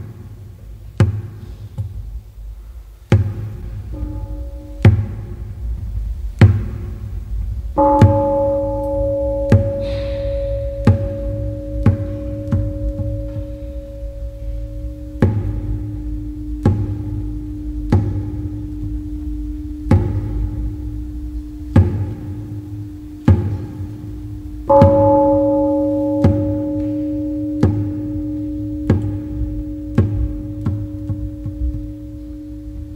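Large wooden fish (muyu) struck with a padded mallet in a slow, steady beat, about one knock every second and a half. A bell is struck twice, about 8 seconds in and again near 25 seconds, each time ringing on for several seconds over the knocks.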